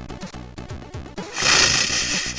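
Cartoon orchestral score with rhythmic low notes about three a second. About a second and a half in, a loud hissing burst of noise, like a crash or cymbal, comes in over the music and lasts about a second.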